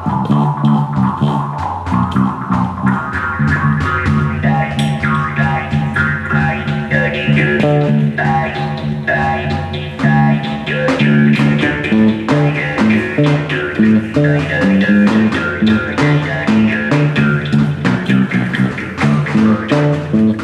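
Live improvised instrumental trio: an electric bass guitar repeating low notes, a jaw harp played into a microphone with its buzzing drone and shifting overtones, and a hand-struck frame drum beating steady strokes throughout.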